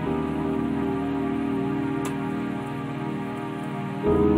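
Soft new-age instrumental background music with sustained chords, a brief tick about halfway, and a louder new chord coming in at the end.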